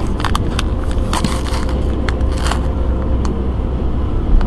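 Handling noise of a dashboard-mounted camera being straightened by hand: a scatter of clicks, taps and rustles, bunched near the start, then a few more about a second in, midway and near the end. Underneath is the steady low road and engine rumble inside a moving car.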